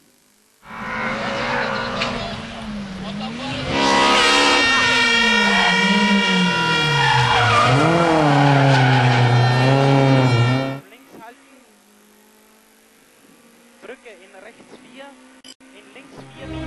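BMW E30 M3 rally car's four-cylinder engine revving hard, its pitch rising and falling with throttle and gear changes, with tyres squealing as the car slides through a tight turn. It gets louder about four seconds in and cuts off abruptly near eleven seconds, leaving only faint sounds.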